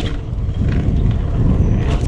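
Wind buffeting a camera microphone over a BMX bike rolling on a concrete road, a dense steady rumble, with one sharp click at the start and another near the end.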